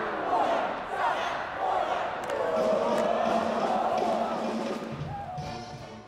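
Background music mixed with an arena crowd cheering and shouting, fading out near the end.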